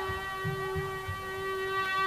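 A single instrumental note held steady and soft, its overtones ringing evenly without any change in pitch.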